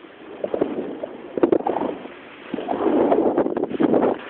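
A snowboard riding through deep powder snow: the board's hiss and swish through the snow comes in uneven surges, with a few sharp knocks about a second and a half in and the longest, loudest stretch in the last second and a half. Wind buffets the microphone.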